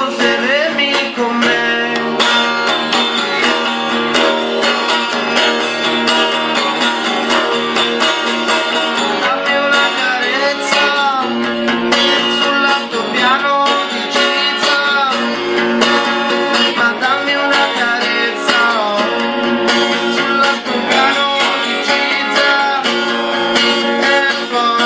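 A live song: strummed guitar playing steadily, with a man singing over it at times.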